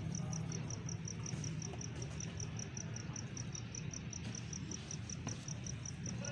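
A cricket chirping steadily, a short high-pitched chirp about four times a second, over a low steady hum.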